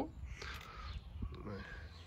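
A bird calling faintly in the background, in a short gap between a man's words.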